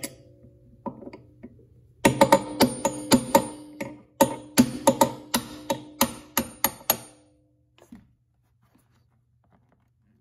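A hammer tapping on the metal of a C3 Corvette's hood striker assembly, about four quick strikes a second, each with a metallic ring that holds a steady pitch. The strikes stop about seven seconds in.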